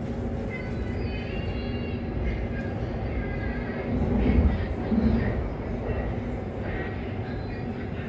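Bangkok MRT Blue Line train heard from inside the carriage while running between stations: a steady rumble of wheels and car body with a constant motor hum, swelling louder about four seconds in.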